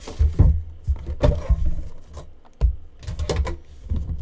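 Metal tin box of Panini Immaculate baseball cards being handled and its lid opened, with a string of knocks and clicks of tin and lid and a quick run of clicks about three seconds in.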